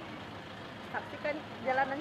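Low, steady outdoor background noise, with brief, fainter bits of a man's speech about a second in and again near the end.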